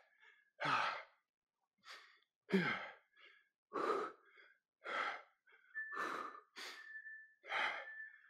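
A man breathing hard, in and out about once a second, with loud airy exhales: he is winded from an intense jump-rope and dumbbell workout.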